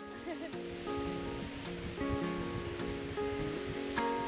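Acoustic guitar picking slow, sustained notes and chords, fading up over the first second, over a steady wash of background noise.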